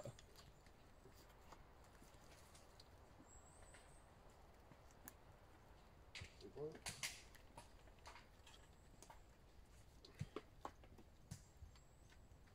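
Faint scraping of a knife blade taking hardened tree resin off the bark of a trunk, mostly very quiet, with a short cluster of scrapes about six seconds in and a few light clicks near the end.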